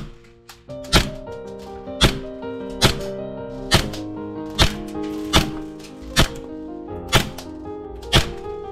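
Tokyo Marui Hi-Capa gas blowback airsoft pistol firing single shots through a chronograph, eight sharp cracks a little under a second apart, each with the slide cycling. Background music plays underneath.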